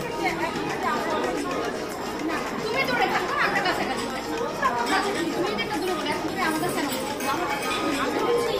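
Women talking in conversation over the background chatter of a crowd in a large hall.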